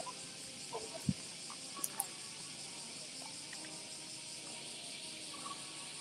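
A steady, high-pitched chorus of summer cicadas. A soft thump comes about a second in.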